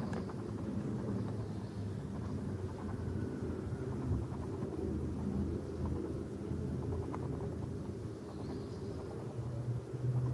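Steady low rumble of street background noise coming in at an open window, with a few faint light clicks over it.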